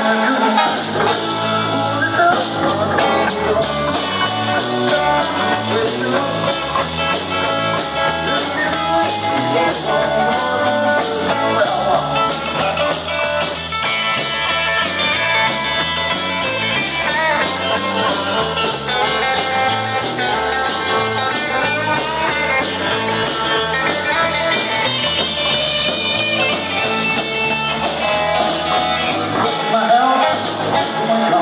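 Live rock band playing: drum kit keeping a steady beat under electric bass and electric guitar, with a sung vocal.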